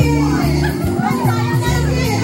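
Loud party music played over speakers, with a crowd of children and adults shouting and calling over it.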